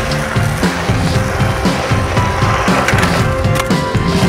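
Skateboard wheels rolling over a hard court surface as the skater pushes along, under music.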